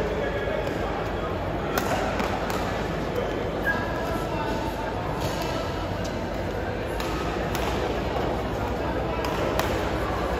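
Badminton rally: sharp racket strikes on the shuttlecock, about one a second and unevenly spaced, over a steady murmur of crowd voices in a large sports hall.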